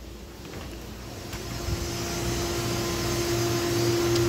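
Steady machine hum and hiss from a fish-rearing tank room, with a low drone and a steady mid-pitched tone, growing louder as the door opens onto the tanks.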